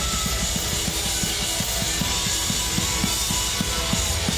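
Heavy rock music with a fast, steady drum beat of about five hits a second under a dense band mix.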